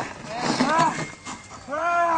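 A dog barking in protection training, three short barks spread over two seconds, as a decoy crouches and teases it.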